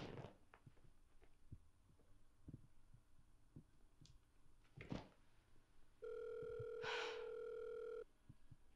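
Faint taps and a brief rustle, then about six seconds in a steady electronic phone tone sounds for about two seconds and cuts off abruptly: a smartphone's call tone as an outgoing call rings out.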